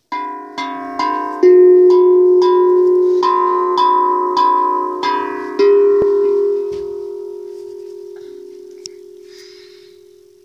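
Hang (steel handpan) struck about a dozen times in the first six seconds, its metallic notes overlapping and ringing. After the last strikes the notes ring on and fade slowly.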